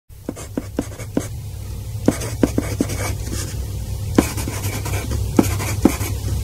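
Writing on paper: irregular scratchy strokes and sharp taps of the writing tip, over a steady low hum.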